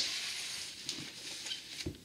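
Cardboard LP record jackets being handled: a sharp tap at the start, then a soft sliding, rustling hiss of card that fades, with light taps about a second in and near the end.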